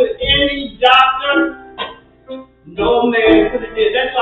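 Music: a woman's voice in long sung phrases over instrumental accompaniment, with a short break about two seconds in.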